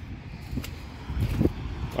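Uneven low rumble of wind buffeting the microphone, with a faint click about half a second in.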